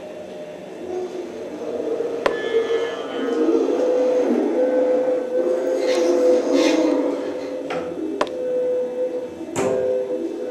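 Prepared string quartet (violins, viola, cello) holding one long bowed note, with rough, scratchy bowing noise swelling in the middle. Three sharp clicks stand out: one about two seconds in and two near the end.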